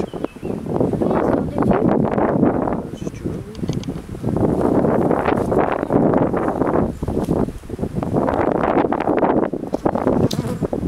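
Wind buffeting the microphone in three long gusts, a rough rumbling rush with short lulls between them.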